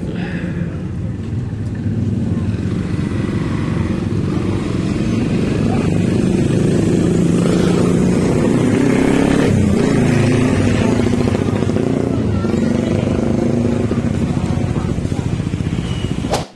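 Motorcycle and car engines running and passing close by on a busy street, loudest through the middle, with people's voices in the background.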